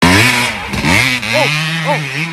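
Dirt bike engine catching and revving on a push start, the bike running off under power. Shouts of "oh" over it.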